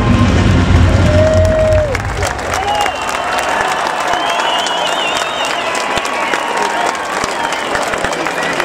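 A crowd applauding and cheering, with a few whistles. A loud low rumble stops about two seconds in, and the clapping carries on after it.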